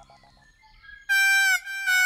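Background music: after a brief lull, a wind instrument comes in about a second in with loud held notes that step downward in pitch.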